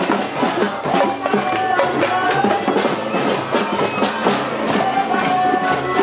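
Live music played by protesters in the street: drums beat a steady rhythm under a few held melodic notes.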